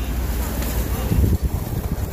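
Wind buffeting the microphone: a steady low rumble, with faint voices underneath.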